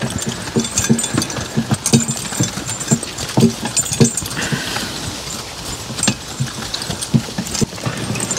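A team of draft horses walking on wet grass while pulling a sled: irregular muffled hoof thuds, several a second, with harness rattling.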